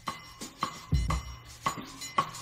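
Background music: a beat of deep bass thumps and sharp clicking percussive hits.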